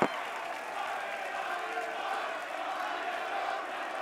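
Large crowd cheering and clapping, a steady mass of voices and hands.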